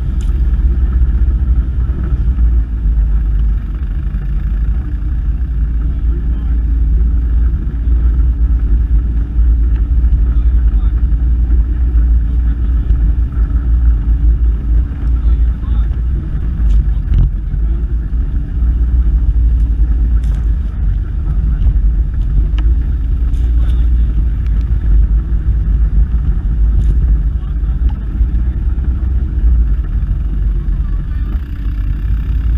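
ATV engine running steadily as the machine rides along a grassy trail, recorded close up from a camera mounted on the quad, with a heavy low rumble. The engine note holds fairly even and falters briefly about halfway through.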